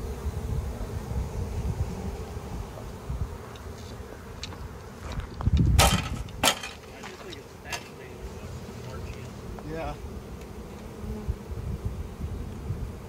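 Swarm of honeybees buzzing in a steady hum around a hive box as they cluster on it and march in. A couple of sharp knocks cut through a little past halfway.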